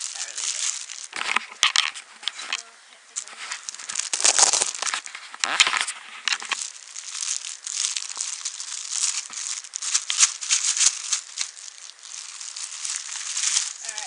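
Clear plastic packaging crinkling and rustling as it is handled and pulled open, with several louder crackles in the first half.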